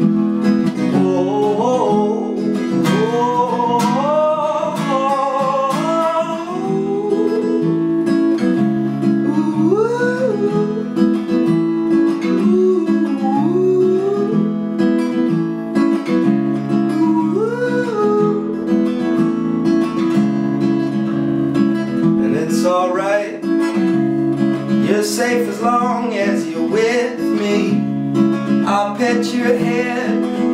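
Solo acoustic guitar strummed in steady chords, with a man singing over it in phrases, pausing between lines.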